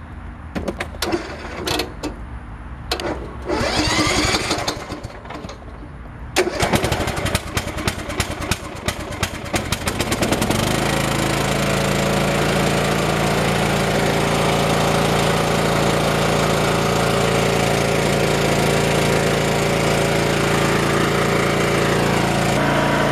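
Troy-Bilt riding lawn mower engine cranked by its electric starter on power from a portable jump starter, because the mower's lead-acid battery is dead. It cranks for about four seconds, catches, and settles into steady running. A few clicks and knocks come before the cranking.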